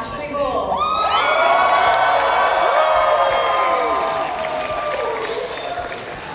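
Seated audience cheering and whooping. Many voices rise together about a second in, hold loudly for a few seconds, then ease off.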